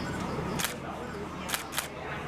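Three short, sharp clicks, the first a little over half a second in and two close together near the end, over a low steady background murmur.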